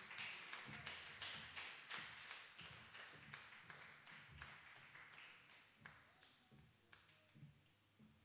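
Faint, scattered hand clapping from a congregation, a few quick claps a second, fading away toward the end.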